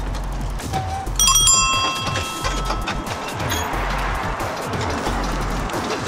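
A pedicab's bicycle bell rung once about a second in, its ring fading over about a second, over background music with a steady bass beat.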